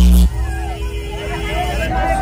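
Loud, bass-heavy music from a DJ truck's loudspeaker stacks cuts off abruptly just after the start, leaving a crowd talking and calling out.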